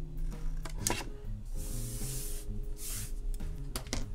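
Small scissors cutting cardstock: a rasping cut through the card about halfway through, and a shorter one soon after, over soft background music.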